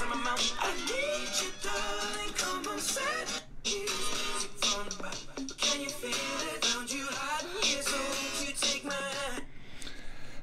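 A song with singing over a beat, playing from a YouTube video through a Samsung Galaxy Note9 phone's built-in loudspeakers, with little bass.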